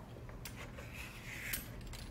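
Faint handling sounds of a vegetable peeler and a delicata squash over a wooden cutting board: a light click about half a second in, then a short soft scrape ending in another click a little past the middle.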